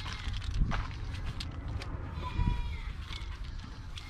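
Farm animals calling in the distance, faint short calls over a steady low rumble, with a few light clicks.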